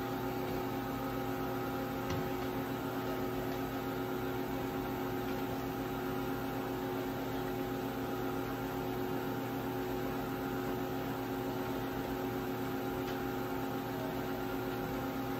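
Steady electrical hum of a powered CNC vertical machining centre, holding several constant pitched tones, with a faint click about two seconds in.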